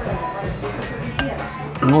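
A metal spoon clinking lightly against a ceramic soup bowl a few times as it stirs and dips into the soup.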